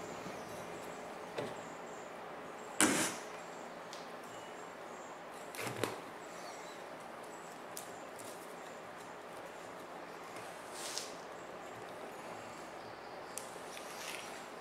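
Quiet handling sounds of thin jute string being pulled and tied around the spoolette of a paper cylinder shell: a few brief swishes and rustles, the loudest about three seconds in, over steady room tone.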